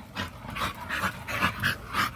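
American Bully dog panting quickly and steadily, about four to five breaths a second.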